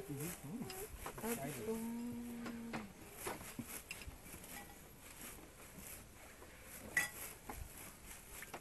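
Voices at a meal table for the first few seconds, one of them drawn out into a long held tone, then scattered clinks of cutlery and dishes, with a sharper click near the end.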